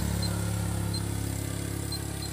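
Steady electric hum of a running submersible water pump system, fading slightly. The pump is drawing about 9.7 amps but not lifting water.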